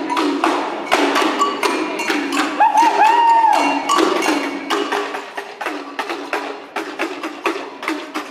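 Rhythmic percussion with sharp, wood-block-like knocks, about three a second, over a steady low drone. A short wavering, gliding tone comes in about three seconds in.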